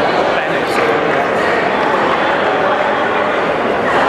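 Steady hubbub of a crowd in a large sports hall, with many voices talking and calling out over one another.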